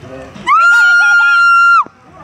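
A high-pitched voice holding one long, steady squeal for about a second and a half, sliding up at the start and dropping off at the end, with other voices faintly underneath.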